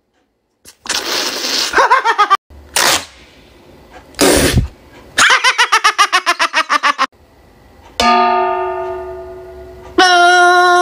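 A man's loud vocal outbursts, then a fast, rhythmic run of laughter. About two seconds before the end comes a clang of stainless steel bowls, which rings on in steady tones that slowly fade.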